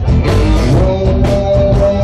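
Live rock band playing loud: drum kit with repeated cymbal crashes under electric guitar and bass guitar.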